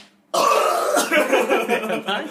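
A man's long, loud burp that starts suddenly about a third of a second in, from an overfull stomach.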